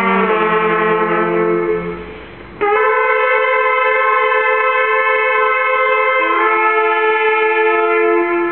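Trumpets and saxophones playing long held chords together, a slow hymn-like passage. The first chord fades out about two seconds in, a new chord enters just after, and the harmony changes again about six seconds in.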